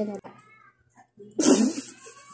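A girl's spoken word trailing off, then a short, breathy burst of laughter from her about one and a half seconds in.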